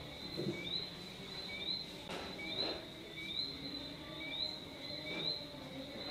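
Small animals chirping in the background: short high chirps repeat about twice a second over a faint, steady high-pitched drone.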